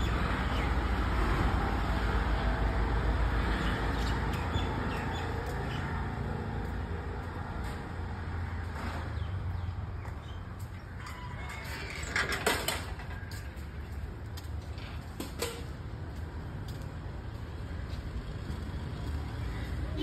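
Outdoor traffic noise from surrounding streets: a steady rumble, fuller in the first few seconds, with a brief louder burst about twelve seconds in.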